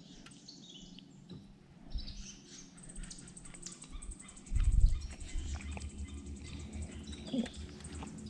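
Birds singing in the swamp woods: short runs of high notes, with a thin steady high trill from about three seconds in. A dull low bump about halfway through.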